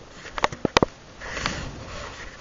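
A few sharp clicks in the first second, then a breathy dog sniff close to the microphone.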